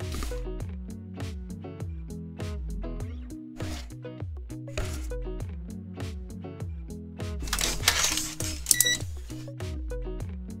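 Background music with a steady beat and a stepping bass line. Near the end comes a subscribe-button animation sound effect: a rushing swoosh, then two sharp clicks with a short ringing ding.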